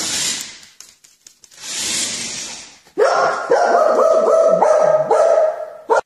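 Small dog whining and yapping in a run of short pitched cries for about three seconds, starting about halfway in. Before it, two short rushing noises.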